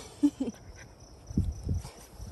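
Pomsky puppy making a couple of short vocal sounds while being belly-rubbed, with a woman's brief laugh, followed by low rustling from handling.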